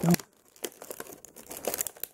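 Clear plastic blister tray crinkling in short, irregular crackles as fingers pull at it to work a tightly held extra head free.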